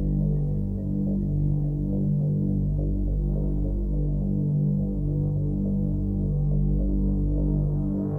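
Dark synthesizer film-score music: a low, throbbing drone of sustained bass notes that pulse roughly once a second.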